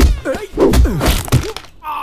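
Fight sound effects: several heavy punch thuds in quick succession, the first right at the start, mixed with a man's pained grunts and groans.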